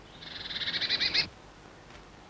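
Blue tit calling: a rapid run of high notes, about a dozen a second, swelling in loudness for about a second and then stopping abruptly.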